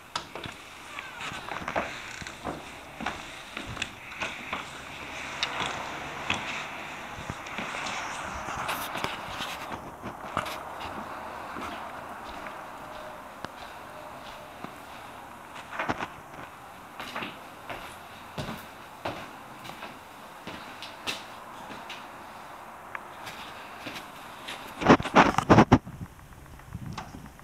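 Footsteps and light knocks in an empty room, scattered and irregular, with a burst of louder knocks, like a door or cupboard being handled, about a second before the end.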